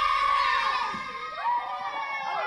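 A group of children shouting and cheering excitedly, many voices at once. A long high cry dominates the first second, then overlapping short yells follow.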